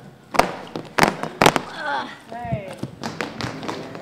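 Several sharp knocks and thumps, the loudest about half a second, one second and a second and a half in, with voices and laughter between them.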